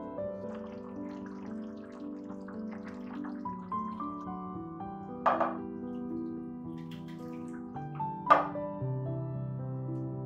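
Ladlefuls of tomato-sauce potato stew splashing and plopping into a ceramic baking dish over soft piano music. Two sharper, louder splats come about five and eight seconds in.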